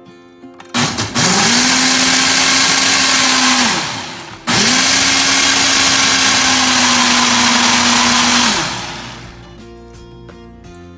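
Ninja Professional countertop blender blending a green smoothie in two runs, the first about three seconds long and the second about four. Each time the motor spins up quickly to a steady pitch and then winds down when it is released.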